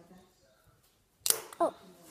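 Plastic zip strip of an LOL Surprise ball being torn open: a single short, sharp rip about a second in, as the stuck zipper finally gives.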